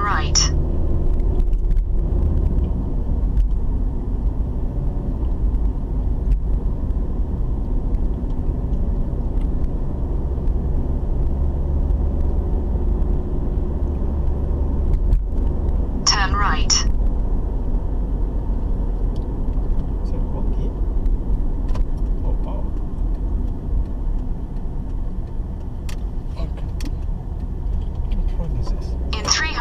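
Steady low rumble of a car driving, tyre and engine noise heard from inside the cabin. About 16 seconds in comes one brief, higher-pitched burst.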